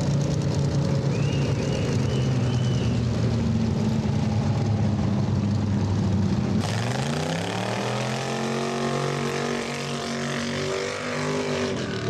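Race car engine running steadily at low revs, then revving up sharply about six and a half seconds in and held at high revs as the car does a burnout.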